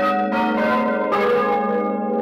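Swinging church bells of a four-bell Bolognese tower, a medium-weight set hung in a wooden frame, struck three times in quick succession close up in the belfry. Each stroke clangs out over the long, overlapping hum of the earlier strokes.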